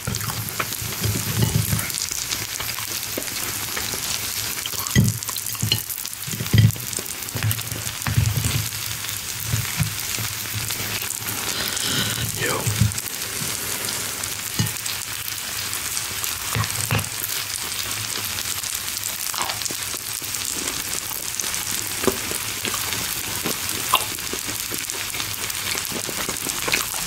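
Food sizzling on a hot tabletop stone grill, a steady crackle throughout, with scattered soft knocks and clicks from cutlery and handling of the food.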